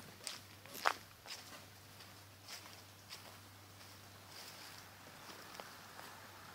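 Faint, irregular footsteps through grass and undergrowth, with the clearest step about a second in.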